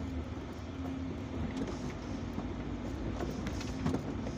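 Loaded semi-trailer truck's diesel engine running steadily, heard from inside the cab, with road noise.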